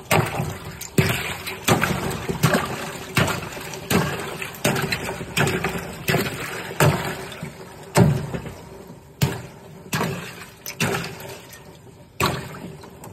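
Claw hammer chopping repeatedly into a layer of broken ice floating on water in a tub, about one blow a second. Each strike cracks ice and is followed by splashing and sloshing.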